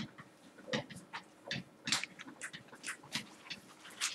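Pen strokes on an interactive whiteboard's surface as words are written: a string of short, irregular scratching squeaks.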